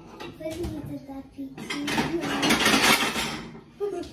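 Plates and kitchenware clattering and knocking on a counter for a couple of seconds, the loudest about two seconds in, with quiet voices.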